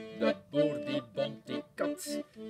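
Button accordion playing an instrumental interlude in short rhythmic chords, about three a second.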